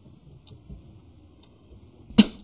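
Quiet room tone with two faint light clicks, about half a second and a second and a half in.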